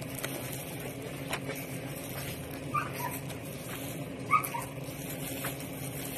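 A household pet gives two short, high whimpering cries, a faint one about three seconds in and a louder one near four and a half seconds, over a steady low hum.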